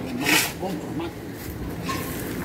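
Only speech: a man's short murmured words and a breathy hiss, with no other clear sound.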